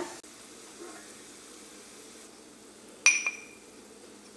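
Cashew nuts frying faintly in ghee in a small pan while a spoon stirs them; about three seconds in comes a single ringing metal clink.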